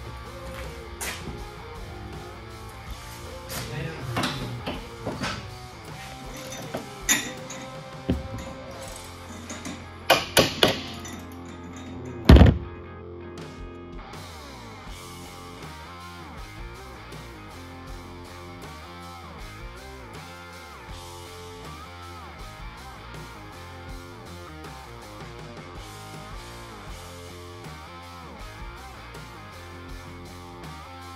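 Metal clanks and knocks from shop work on a van's rear suspension: three quick clanks, then one loud sharp bang about twelve seconds in. Music with guitar and a steady beat takes over for the rest.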